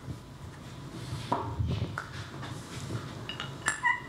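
Steel and iron parts of a hand plane being handled on the bench: soft handling and rubbing noises, then a few ringing metallic clinks near the end as the parts knock together.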